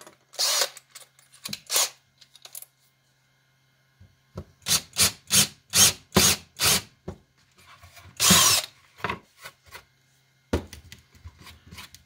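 Makita cordless drill boring a three-eighths-inch hole into a wooden board, run in a string of short bursts about three a second, with a longer burst later.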